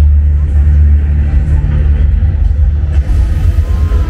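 Projection-mapping show soundtrack playing a deep rumbling car-engine sound effect in place of the music, with a short gliding tone near the end.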